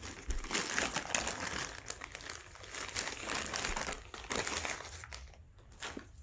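Thin clear plastic packaging crinkling and rustling as hands unwrap a parcel, in irregular bursts that thin out near the end.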